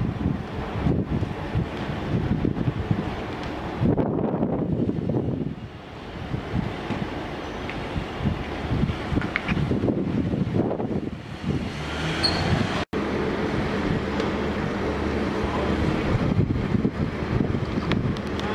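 Wind buffeting the microphone over the low, steady running of a vehicle engine, with a momentary dropout about two thirds of the way through.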